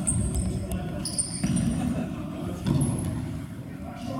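Futsal players' shoes squeaking on a sports-hall court floor, several short high squeaks, amid players' shouts and the thud of the ball, all echoing in the hall.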